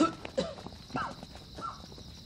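Men crying out "aiya" several times in short cries that fall in pitch, with scuffling footsteps as they hurry off.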